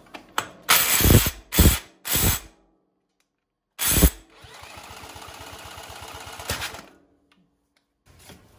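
A cordless drill spins the flywheel of a vintage David Bradley walking tractor's small air-cooled single-cylinder engine in three short, loud cranking bursts. About four seconds in, after one more burst, the engine catches and runs for a few seconds with a quick, even beat, then stops.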